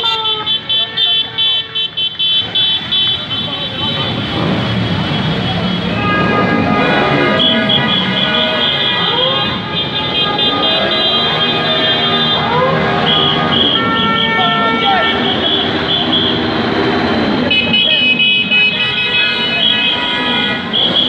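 Many motorcycle horns honking at once, some held in long blasts and others sounding in rapid short beeps, over engine rumble and crowd voices.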